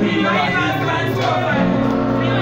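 Electronic keyboard holding sustained chords, with a voice over the microphones on top of it.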